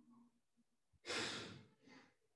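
A person breathing out close to the microphone: a sudden sighing exhale about a second in that fades over half a second, then a shorter, softer breath near the end.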